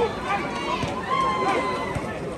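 Indistinct voices of several spectators talking and calling out at once, overlapping chatter with no clear words.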